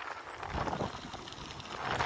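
Tyres of a Van Nicholas Rowtag gravel bike rolling at speed on a dirt and gravel forest track. The sound is a steady, fairly quiet rushing with fine ticks of grit under the tread.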